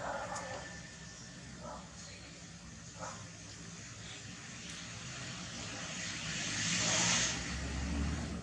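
Outdoor background with a few brief, faint voice-like sounds in the first three seconds, then a rushing noise with a low rumble that swells to its loudest near the end.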